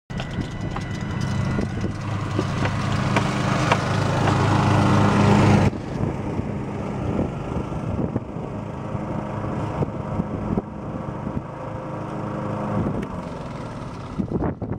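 Car driving, heard from inside the cabin: engine and road noise build steadily, then cut off suddenly about halfway through. A quieter, steady engine follows, the Cub Cadet riding lawn mower running in the field.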